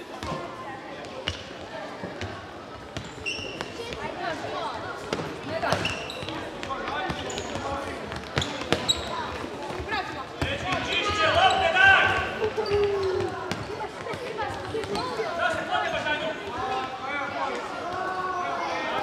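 A futsal ball being kicked and bouncing on a wooden sports-hall floor in sharp knocks, with short shoe squeaks and players and spectators shouting, all echoing in the hall. The voices are loudest about eleven to twelve seconds in.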